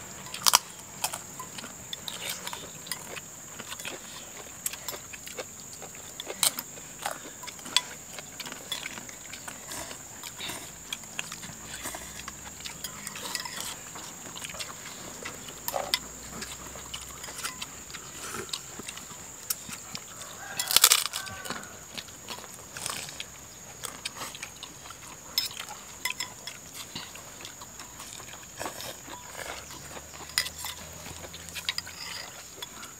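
Metal spoons clicking against ceramic soup bowls and people eating and slurping soup, with a louder slurping noise about two-thirds of the way through. A steady high-pitched insect drone runs underneath.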